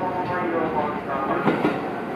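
Railway platform sounds beside a stopped electric train with its doors open: a voice in the first second, then scattered light clicks.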